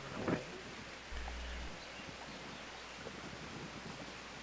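Faint, steady wash of small waves breaking over rocks, with light wind on the microphone; a brief low wind rumble about a second in.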